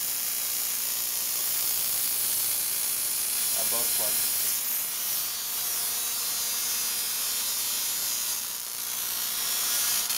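Spark plugs firing in rapid succession from capacitor-discharge ignition units with a diode in each circuit, producing plasma discharges across the gaps. The sparking gives a steady, high-pitched hiss.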